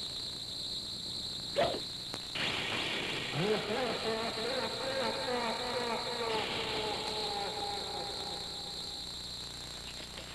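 Sci-fi monster sound effects for the alien Baltan: a steady high electronic whine with a wavering, warbling alien cry rising over it. A sharp knock comes about a second and a half in, and the whine stops briefly after it.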